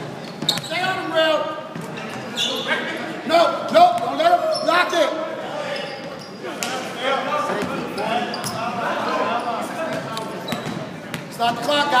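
A basketball bouncing on a hardwood gym floor during play, with players' indistinct voices calling out over it, all echoing in a large gym hall.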